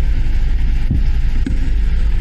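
Steady low rumble of wind buffeting the microphone, with a couple of faint knocks about halfway through.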